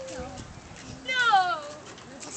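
A domestic goose gives one loud, drawn-out call that falls in pitch, about a second in.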